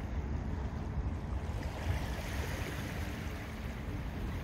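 Steady outdoor wind and water: wind buffeting the microphone with a low, fluttering rumble, over small waves washing at the shoreline.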